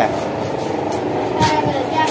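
Busy street-market background noise: a steady hum of passing traffic with a background voice about a second and a half in.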